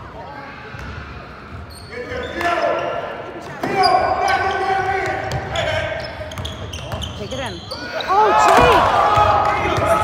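Basketball game sounds in a large, echoing gym: a ball bouncing on the hardwood floor, sneakers squeaking, and players calling out. The squeaks rise and fall quickly near the end as play speeds up.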